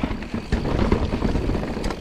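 Forbidden Dreadnought full-suspension mountain bike running fast down a rocky, rooty trail: tyres on dirt and stones, with frequent short knocks and rattles as it hits the bumps. Wind buffets the chest-mounted microphone.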